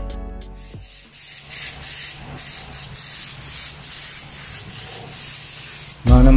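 Music fading out in the first second, then an uneven hiss with a faint steady hum underneath.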